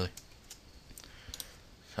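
Several faint, sharp clicks of a computer mouse and keyboard, scattered across the two seconds.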